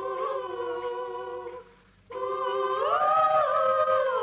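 Wordless humming in a Tamil film song, holding long, sliding notes of a melody. It breaks off for about half a second midway, then comes back on a rising note.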